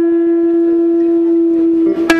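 Semi-hollow electric guitar sustaining a single held note that rings steadily for about two seconds with no new pick stroke.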